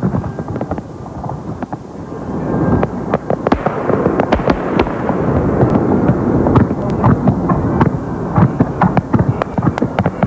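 Fireworks display: a quick run of bangs and crackles that thickens into a dense, louder barrage from about three seconds in.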